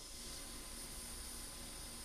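Quiet room tone: a faint, steady hiss with no other event.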